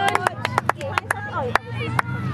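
Scattered hand claps from spectators close to the microphone, about a dozen sharp claps at an uneven pace, with voices calling out between them.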